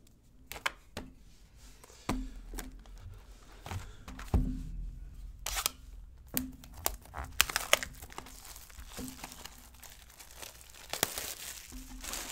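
Plastic wrap crinkling and tearing as a sealed box of baseball cards is opened, with taps and knocks from the cardboard box and the cards being handled. The tearing comes in two louder spells, about halfway through and near the end.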